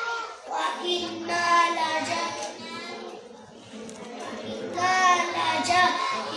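A group of young children singing together in unison in a hall, their voices dropping away briefly about three seconds in before rising again.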